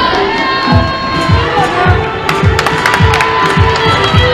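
Music with a steady beat, with a crowd cheering and shouting over it, loudest in the second half.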